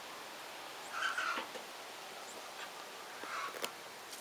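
A cockerel held down for caponizing surgery without anesthetic gives two short squawks, one about a second in and another a little after three seconds.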